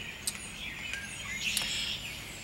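Birds chirping faintly in the background, a few short scattered calls over a low steady outdoor hum.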